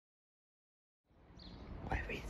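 Silence for about a second, then outdoor sound cuts in: birds chirping in short calls over a low, steady rumble.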